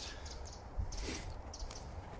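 Faint footsteps and rustles while walking on a forest floor, over a steady low hum of distant motorway traffic.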